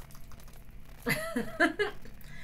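A woman's voice: a few brief, soft vocal sounds, not words, about halfway through.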